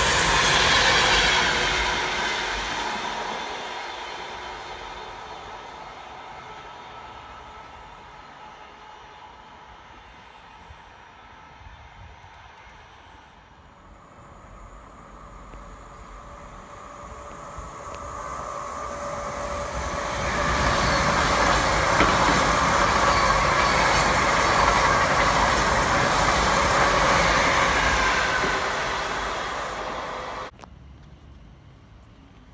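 An express train running past at speed, its rail and wheel noise fading away over the first dozen seconds. Then a Hitachi Azuma high-speed train draws near and rumbles in, loud from about twenty seconds in.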